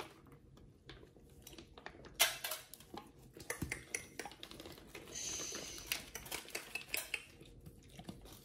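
Raw chicken pieces being handled and set down onto a stainless steel divided plate: scattered clinks and knocks of meat and fingers against the metal, the sharpest about two seconds in, with a brief rustle around five seconds in.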